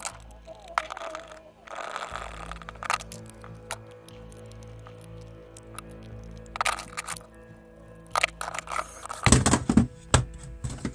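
Background music with a steady tone, over the clicks and knocks of 3D-printed plastic parts and metal tools being handled and set down on a tabletop. There is a louder clatter near the end.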